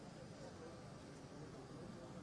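Faint, steady outdoor airport-apron background noise with indistinct distant voices.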